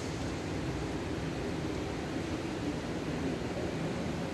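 Steady noise with a faint low hum, most likely from an electric pedestal fan running in the church.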